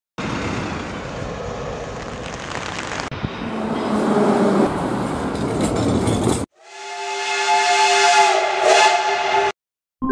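Transport sounds cut together: street traffic noise with a bus, then a tram running, then a long horn sounding a chord of several tones for about three seconds, fading in and cutting off abruptly.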